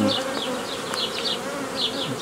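Honeybees humming steadily in large numbers over the open top of a hive, its frames exposed and covered with bees.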